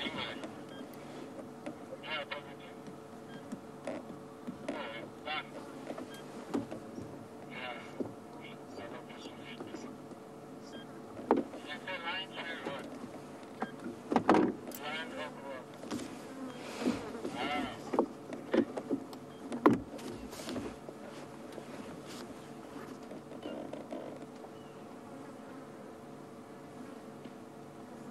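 A lioness feeding on a carcass: irregular sharp crunches and tearing bites, loudest and most frequent in the middle stretch, over a steady low hum.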